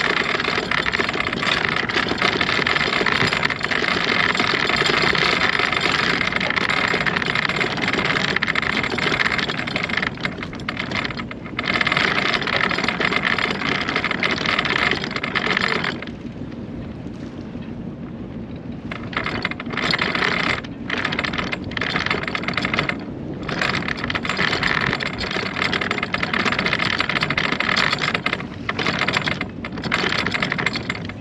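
Rough rushing noise of wind and water on a sailboat under way, with a rapid crackly texture; it drops away for about three seconds past the middle and dips briefly a few more times.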